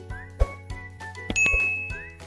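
Background music with a regular drum beat, and a bright bell-like chime sound effect a little over a second in, ringing for about half a second: the notification-bell ding of a subscribe animation.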